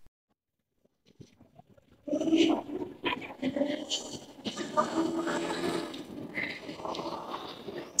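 Near silence for about two seconds, then busy outdoor street ambience: a mix of distant voices, scattered clatter and background noise.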